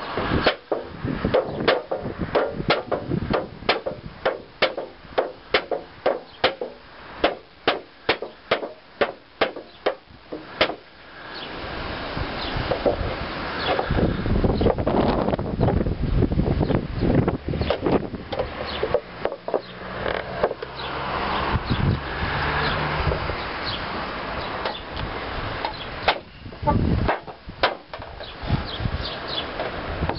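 A folding knife stabbed point-first again and again into a thin sheet-metal tin lid, sharp strikes about two a second for the first ten seconds or so. Then a rough grating scrape with scattered knocks as the blade is worked through the metal to cut it open.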